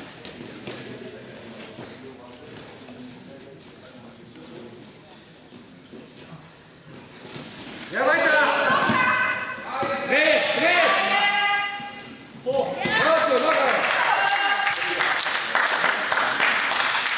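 Low hall murmur, then, about halfway through, loud shouting of encouragement from wrestling coaches and spectators as one wrestler takes the other down. There is a brief lull after a few seconds before the shouting resumes.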